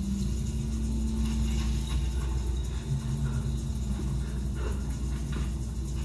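Audio of a film clip playing over loudspeakers in a small hall: a low steady rumble with a held low tone that fades out about four seconds in, and faint scattered sounds over it.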